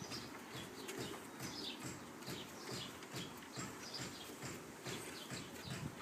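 Husky puppies' paws and claws tapping and scuffling irregularly on wooden deck boards as they wrestle, with soft low thumps of their bodies.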